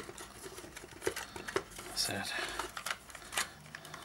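Plastic casing of a Behringer U-Phoria UM2 audio interface clicking and scraping in the hands as it is pried apart and its clip worked loose, with a sharper click near the end.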